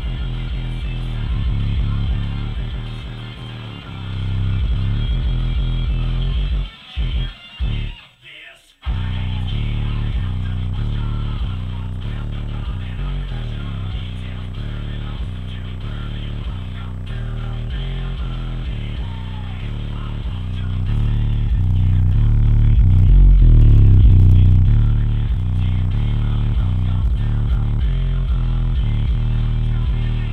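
Bass-heavy music played loud through a pair of Massive Audio Hippo XL 6.5-inch subwoofers, whose deep bass dominates over a regular beat. The music drops out briefly a few times about seven to nine seconds in, and the bass is loudest a little after twenty seconds. The new subs are loosening up as they break in.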